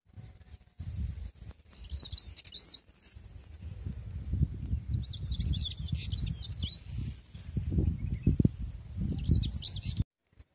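Small birds chirping in quick bursts of high twittering, three times: about two seconds in, again around five to six seconds, and near the end. Beneath them runs a low, uneven rumbling on the microphone, the loudest sound.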